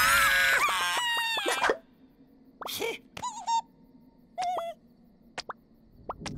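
Cartoon chick characters' voices: a loud, shrill, wavering cry lasting under two seconds, then a few short squeaky chirps spaced a second or so apart.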